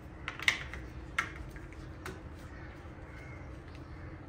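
A few sharp plastic clicks and knocks, loudest about half a second in and again a little after a second, as a plastic battery terminal cover is slid and pressed onto the terminal by hand. A steady low hum runs underneath.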